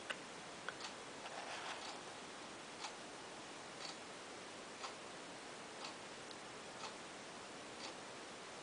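Faint, regular ticking of a clock, one tick about every second, over a steady background hiss. A brief faint rustle comes about a second and a half in.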